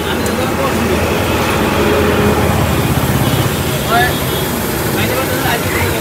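Roadside traffic noise: a steady low engine rumble from passing vehicles, with voices talking in the background.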